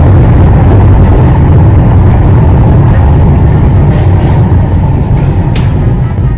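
The Montjuïc funicular car running through its tunnel, heard on board as a loud, steady, deep rumble of wheels on rail.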